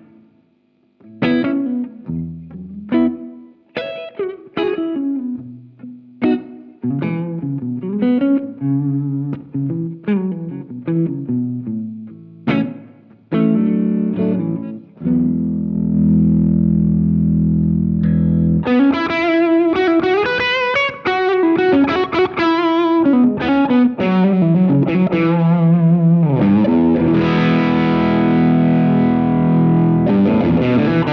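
Les Paul-style electric guitar played through a Greer Royal Velvet overdrive pedal, an AC30-style class-A British drive. It starts with single-note blues phrases, lets a low chord ring about halfway through, then breaks into louder, denser, more driven playing for the second half.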